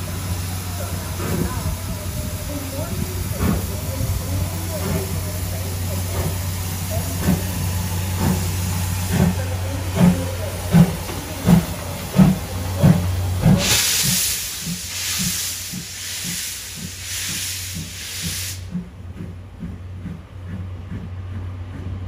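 JNR Class C11 steam tank locomotive (C11 325) pulling away with a train: its exhaust chuffs come closer and closer together as it gathers speed, and its steam hisses in loud bursts for about five seconds past the middle before cutting off suddenly. A steady low hum runs underneath.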